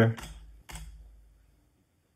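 Two keystrokes on a computer keyboard, about half a second apart, with a low dull thud under them.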